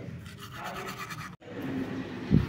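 Teeth being brushed with a toothbrush: a soft, quick scrubbing. It cuts off suddenly a little past halfway.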